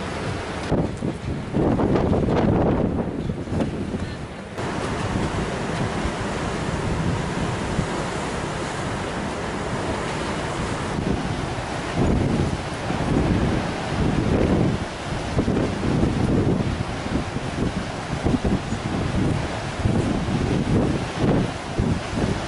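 Storm wind gusting hard on the microphone in uneven blasts, over heavy storm surf breaking on the rocks.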